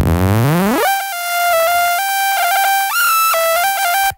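A growl bass resynthesized by a spectral resynthesis plugin with its Color control turned all the way up, giving a bright, buzzy synth tone. It sweeps sharply up in pitch over the first second, then holds high, stepping between notes as the pitch correction snaps it into a minor scale. It cuts off suddenly at the end.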